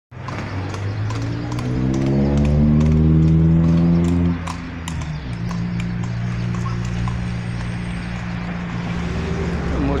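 A motor vehicle's engine running close by. It is louder for the first four seconds, its pitch rising slowly, then drops to a steady, lower idle. Scattered light clicks sound over it.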